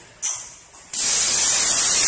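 Compressed air hissing from a pneumatic pad printing machine: a short burst about a quarter second in, then a loud, steady hiss from about a second in.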